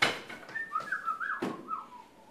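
A person whistling several short sliding notes. A sharp hit comes at the very start and another about halfway through; the first is the loudest sound.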